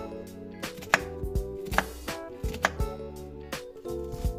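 Kitchen knife chopping a peeled onion on a wooden cutting board: a handful of sharp, irregularly spaced knife strikes against the board.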